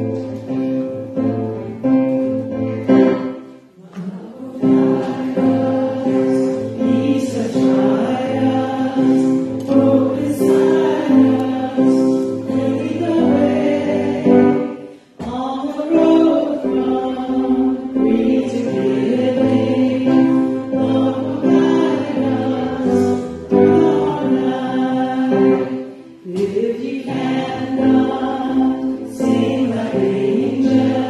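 A congregation singing a gathering hymn together, led by one voice on a microphone, with acoustic guitar accompaniment. The verses run in long phrases, with short breaths between them about every eleven seconds.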